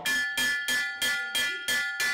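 A hand-held bar struck repeatedly with a rod like a gong, about three strikes a second, each strike ringing on.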